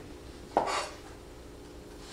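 A single brief clatter of kitchenware about half a second in, a utensil knocking against a dish or board, dying away quickly.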